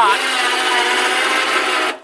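Electric winch motor of a homemade powered exoskeleton running steadily under load, a whine with several steady tones, as it draws the suit's frame and its wearer from hunched to upright. It stops just before the end.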